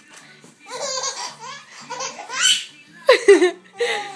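Laughter in several bursts, a baby's giggling among it.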